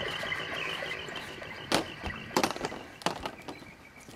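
Plastic hula hoops dropped one by one onto a wooden stage deck: three sharp clacks, about two-thirds of a second apart, in the second half.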